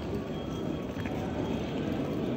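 Wheels of a rolling suitcase running over rough concrete paving, a steady rattling rumble.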